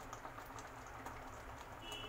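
Faint sizzling and bubbling of a masala paste frying in oil in a kadai, with scattered small spitting ticks.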